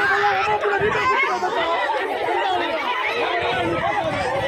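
A crowd of people talking and calling out at once, many voices overlapping with no break.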